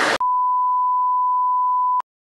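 A single steady electronic beep tone, one pure pitch held for almost two seconds, cutting in sharply after a moment of crowd chatter and stopping abruptly.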